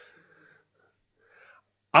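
A man's soft, breathy chuckle into a close microphone, in two faint short bursts, before his speech resumes loudly near the end.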